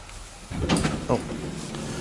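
Door of a 1993 HEFA roped hydraulic elevator opening at the landing: a click about half a second in, then a steady mechanical noise as the door moves open.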